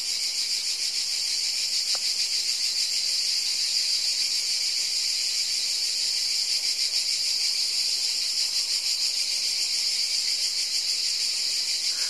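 A steady, high-pitched insect chorus, buzzing with a fine rapid pulse.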